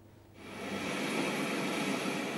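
Steady jet aircraft noise with a faint high whine, fading in about half a second in after a brief silence.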